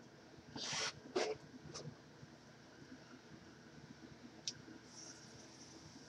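Faint rustling of hands working through thick natural hair, with a few small clicks from plastic hair clips, the sharpest a single tick about four and a half seconds in.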